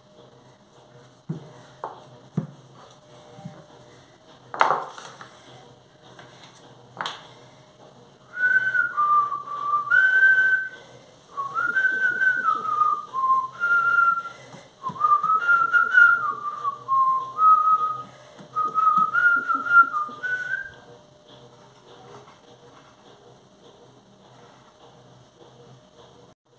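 A person whistling a slow tune in held and sliding notes for about twelve seconds, starting about eight seconds in. Before the whistling there are a few knocks, the loudest about four and a half seconds in.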